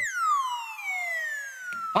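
Comic sound effect: a single whistle-like tone gliding steadily down in pitch for about a second and a half, ending just as a voice comes in.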